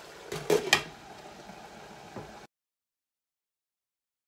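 A glass pot lid clatters onto a frying pan with two or three sharp knocks about half a second in, over the soft simmer of chicken cooking in its juices. The sound cuts off abruptly about two and a half seconds in.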